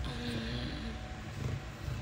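Steady low background rumble, with a faint short hum at the very start.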